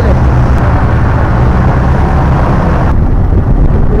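Auto rickshaw driving along, its engine and road noise heard loud and steady from inside the open passenger cabin.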